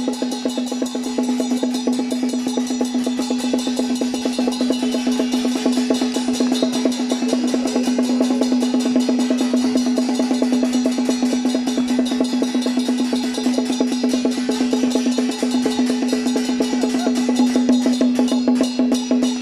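Traditional Chinese drum-and-percussion music for a stilt-walking troupe: drums struck in a fast, unbroken rhythm, with a steady ringing tone running over it.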